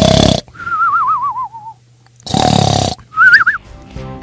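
Cartoon snoring sound effect, twice: a rough snore followed each time by a wavering whistle. The first whistle slides down in pitch for about a second; the second is short and rises.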